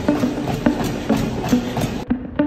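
Running footfalls landing regularly on a treadmill belt over the steady hum of the treadmill motor.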